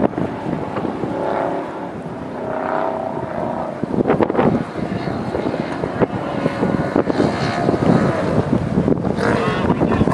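Off-road race truck's engine revving hard under load as it climbs a rocky dirt hill, its pitch rising and falling at first. About four seconds in the sound turns denser and rougher, with sharp crackles through it.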